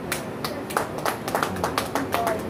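Scattered hand clapping from a small group of people, irregular claps that overlap and thin out.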